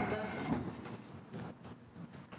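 Faint courtroom room tone, a low steady background noise with a few small rustles and knocks.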